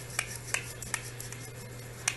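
Hands rolling a small plastic tube of Nad's facial wax between the palms to warm the wax: a few light, scattered clicks and soft rubbing.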